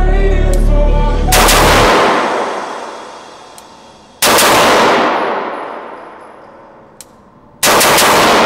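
Three rifle shots from a Geissele AR-15 in 5.56, about three seconds apart, each a sharp crack followed by a long fading echo off the steel-walled shooting booth. Music plays until the first shot.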